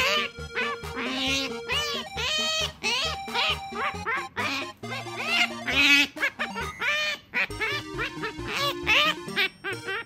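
Asian small-clawed otter chirping over and over in short, high calls that rise and fall, the excited calls the species makes while hunting for food. Background music plays underneath.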